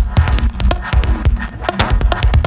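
Leftfield electronic techno/IDM music with a deep pulsing bass and fast, dense clicking percussion over sustained synth tones.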